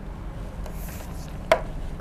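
A single sharp click about one and a half seconds in, over a low steady background hum.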